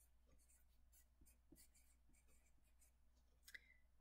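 Faint scratching of a pencil writing a word on a paper worksheet, in short irregular strokes.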